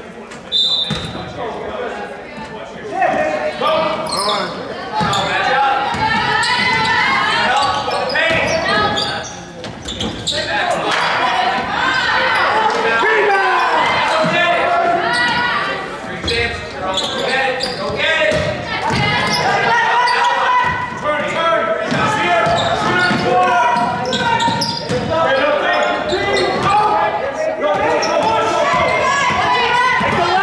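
Basketball game in a school gym: many overlapping voices of players and spectators calling and cheering, over the ball being dribbled and bouncing on the hardwood, all echoing in the hall. A short high whistle note sounds about a second in.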